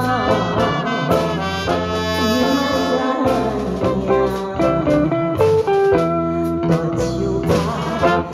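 A woman singing a slow ballad into a microphone through a PA, backed by a live band with drum kit, keyboard and brass.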